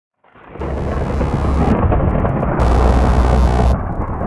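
Opening of a dubstep track: a dense, noisy, thunder-like rumble fades in from silence, over heavy sub-bass that comes and goes in blocks of about a second. The highs cut out twice.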